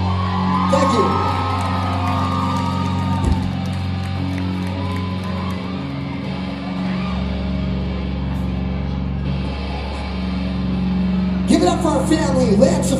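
Live rock band holding a slow interlude: electric guitars and bass sustain long, steady low chords that change about seven seconds in, with a voice wavering over them near the start. A burst of shouting and crowd noise comes in just before the end.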